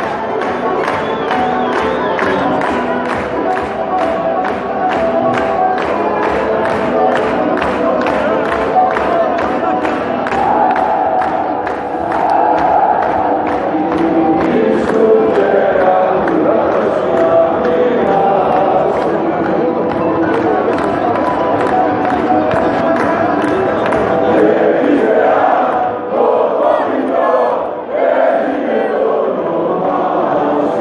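Football crowd in the stands singing and chanting together, loud and sustained, over a steady beat of about two or three strokes a second.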